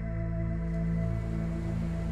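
Soft new-age sleep music of long, steady held tones, with a gentle wash of ocean-wave sound underneath.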